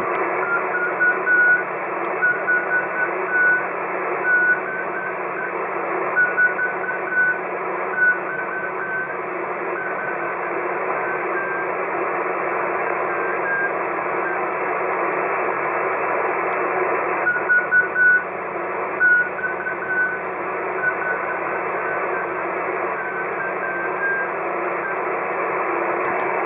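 Morse code from a home-built one-transistor crystal transmitter with a large HC6 crystal, heard through an SDR receiver: a keyed beep sends dots and dashes over steady receiver hiss, with a pause of several seconds in the middle. The note has only a little chirp and is clean enough to use on the air.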